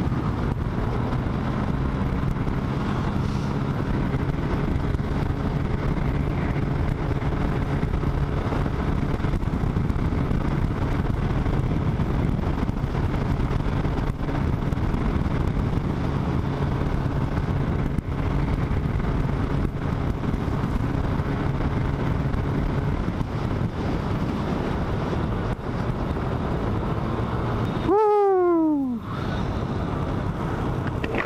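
Wind buffeting the microphone over the steady drone of a Yamaha Aerox scooter's engine at cruising speed; the engine note fades out about two-thirds of the way through as the scooter slows. Near the end a loud falling tone, about a second long, cuts over everything.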